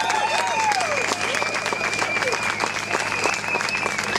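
Crowd applauding at an outdoor rally, with cheering voices that fade out about a second in.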